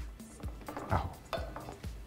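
A spoon stirring kofta in yogurt sauce in a metal pot, knocking and scraping against the pot a few times.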